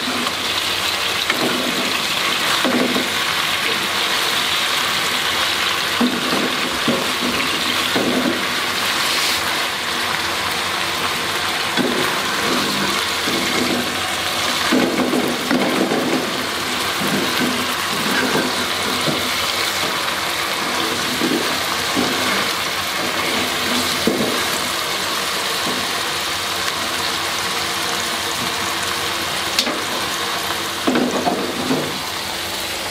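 Eggs frying in oil and dark sauce in a nonstick wok: a steady loud sizzle, with the spatula scraping and pushing in the pan now and then.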